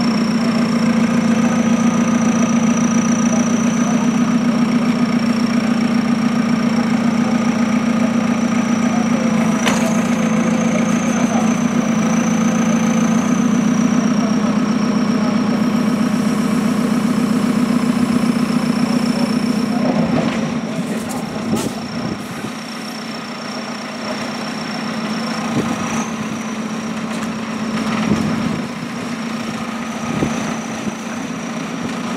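Backhoe loader's diesel engine running steadily while its digging arm works a trench, with a thin high whine above it and a few knocks. The engine gets quieter about two-thirds of the way in.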